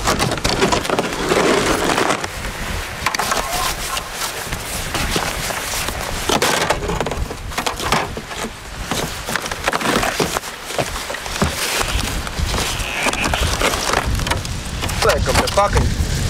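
Steady crackling hiss of slush ice floes drifting on a river, with scattered knocks and crunches from a sea kayak and its gear being handled on icy shore rocks.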